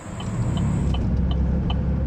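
A car on the road heard from inside the cabin: a steady low rumble of engine and road noise. Over it runs a light, evenly spaced ticking about three times a second.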